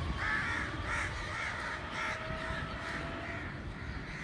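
Crows cawing in a run of short, harsh calls, about two a second, thinning out after the first couple of seconds.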